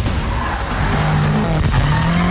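BMW M5 driving hard on a race track: the engine note holds steady, then climbs in pitch as the car accelerates, over loud tyre and road noise.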